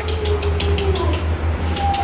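A steady low mechanical hum, like a nearby engine or machine running, with faint irregular clicks over it.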